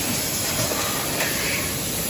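Steady industrial noise of a steel pipe mill: an even hiss over the rumble of running machinery, with no distinct knocks or tones.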